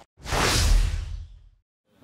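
Whoosh sound effect with a deep rumble underneath, swelling and then fading out over about a second, as used on an animated logo intro.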